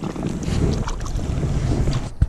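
Wind rumbling on the microphone over splashing, swirling stream water, the rumble growing louder about half a second in.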